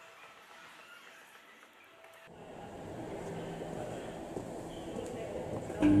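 Escalator machinery running with a steady low hum that comes in abruptly a couple of seconds in and slowly grows louder. Near the end, a recorded voice announcement begins with "thank you".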